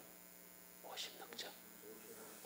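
A steady low electrical hum in a near-silent pause, with a faint, brief voice murmuring about a second in.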